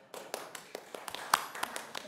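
A run of irregular sharp taps or clicks, about a dozen, the loudest about a second and a half in.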